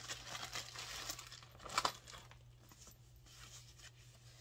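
Clear plastic packaging bag and paper wrapping crinkling as they are handled, with a louder crackle nearly two seconds in, then softer rustling.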